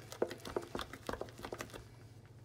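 A spoon stirring thick, creamy mashed potato in a stainless steel saucepan: soft irregular squelches and small clicks against the pan, several a second, fading toward the end.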